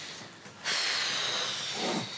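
A woman's long, breathy sigh, starting about half a second in.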